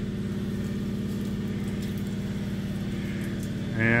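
A steady low mechanical hum with an even, fine pulse, holding at one level throughout.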